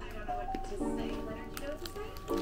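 Lo-fi background music with held chords, with a few faint crisp clicks as a chocolate-coated biscuit stick is bitten and chewed.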